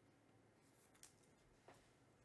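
Near silence: room tone, with two faint clicks, one about a second in and one near the end.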